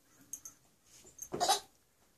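A toddler's short breathy squeal about one and a half seconds in, after a few faint clicks.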